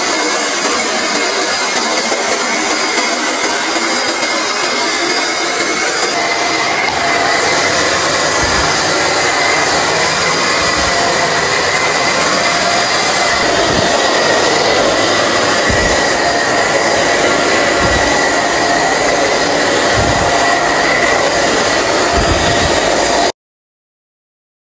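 Vacuum cleaner running steadily with a whine, and low knocks every couple of seconds in the second half. The sound cuts off abruptly near the end.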